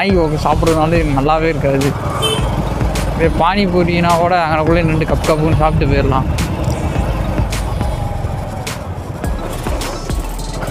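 A person's voice over the steady engine and wind noise of a motorcycle on the move. The voice stops about five and a half seconds in, leaving the engine, wind and occasional clicks.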